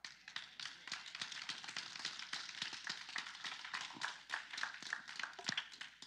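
Congregation applauding: many hands clapping in a dense, steady patter that eases just before the end.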